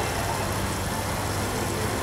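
Steady low hum with a faint even hiss, with no distinct event: the background noise under the narration.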